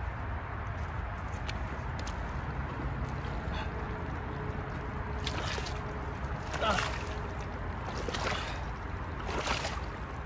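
Feet squelching and sucking in deep, wet mud as a person wades in and sinks to the knees, with a few louder squelches in the second half.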